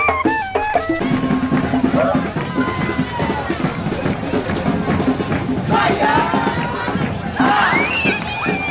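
Cumbia group's caña de millo (cane flute) playing a stepped, reedy melody over drums, cut off abruptly about a second in. Then a crowd shouting and cheering over drumming, with the loudest shouts near the end.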